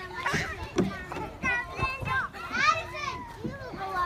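Young children's voices while playing: high-pitched shouts and chatter, with two louder calls, about a second and a half in and near the three-second mark.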